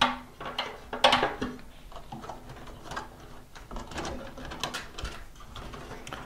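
Computer cables being handled and pushed into place inside an open desktop PC case: irregular clicks, rustles and light knocks of wire and plastic against the sheet-metal chassis. The loudest knocks come at the start and about a second in.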